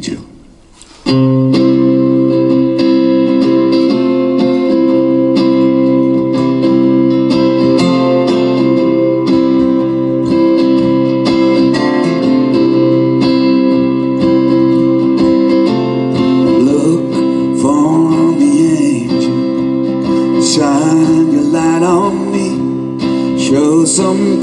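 Two acoustic guitars playing a song's introduction live, starting about a second in after a brief pause. A gliding melody line joins over the chords in the last third.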